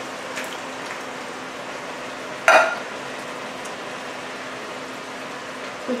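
Chili mixture sizzling steadily in an enamelled cast-iron Dutch oven as canned diced tomatoes are poured in, with a few small clicks and one sharp knock about two and a half seconds in.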